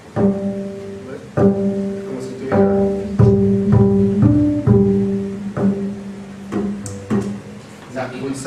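Double bass played pizzicato: about ten plucked notes with sharp attacks, each left ringing, mostly on the same pitch with a higher note near the middle.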